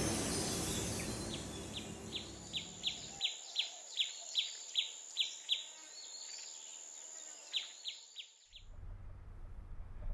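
A bird repeats short, falling chirps about three a second over a steady high whine, as a musical swell fades out at the start. The chirps and whine stop about a second and a half before the end, leaving a low rumble.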